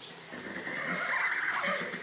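A horse whinnying once: one wavering call of about a second and a half, loudest in the middle, sliding lower as it trails off near the end.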